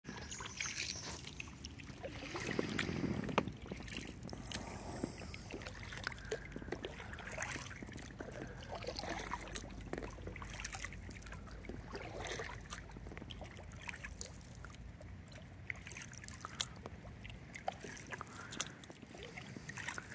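Kayak paddle strokes on calm water: the blades dip and swirl through the water, and drips trickle and patter off them between strokes.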